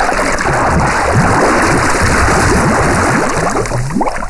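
Water bubbling and gurgling, a dense, steady run of many small bubbles, as if underwater.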